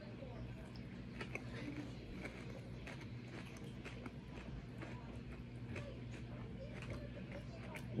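Faint chewing of a bite of crab cake, with small scattered mouth clicks, over a steady low room hum.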